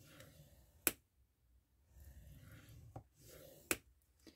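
Scoring stylus drawn along the grooves of a plastic score board, pressing a fold line into manila file-folder card: faint scraping strokes, with two sharp clicks, one about a second in and one near the end.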